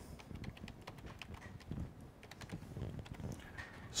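Computer keyboard typing: quiet, irregular key clicks as a name is typed into a field.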